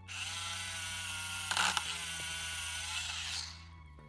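Small motorised toy dentist drill whirring steadily as its bit bores into a Play-Doh tooth, with a brief louder burst about halfway through. It cuts off suddenly near the end.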